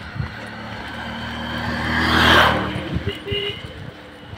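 A motor vehicle passing by on the road: its engine and tyre noise grow louder, are loudest a little past two seconds in, then fade away.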